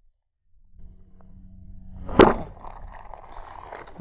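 Sika Post Fix foam pouch being rolled by gloved hands, the bag rustling, until its inner seal bursts with one sharp pop a little over two seconds in, freeing the two foam components to mix; handling noise of the bag goes on after the pop.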